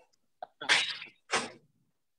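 A person exhaling hard twice in short, forceful breaths, each under half a second, while throwing sword feints.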